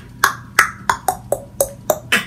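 Beatboxer making a quick run of pitched mouth clicks, about seven in two seconds, each with a short tone that drops in pitch.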